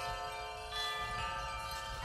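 Chimes ringing in layers, several bell-like tones held together as a chord, with another tone joining a little under a second in.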